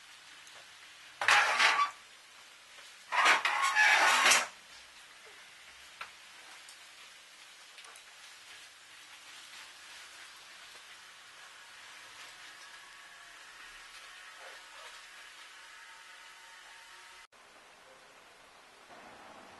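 A metal bistro chair scraped twice across a tiled floor, about one and three seconds in, the second scrape longer. Faint room tone fills the rest.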